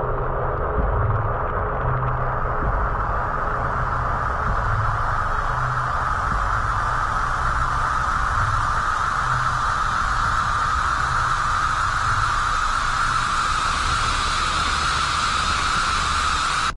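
A steady rushing, static-like noise over an uneven low rumble, growing hissier as it goes on.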